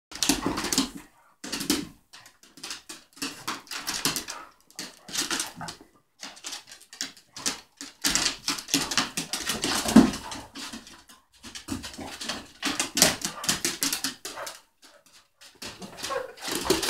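Two dogs play-fighting on a wooden floor: irregular bursts of scuffling and dog noises as they wrestle and chase, with short pauses between the bouts.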